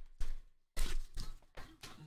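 Trading cards being handled and set down onto stacks on a table, making a few short taps and slides.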